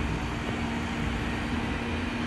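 Steady outdoor city background noise: a low rumble of traffic with a constant hum.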